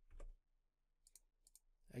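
A few faint computer mouse clicks, clustered about a second and a half in, over near silence.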